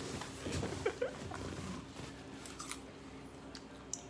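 A person chewing and eating with small mouth sounds in the first two seconds, followed by a few light clicks.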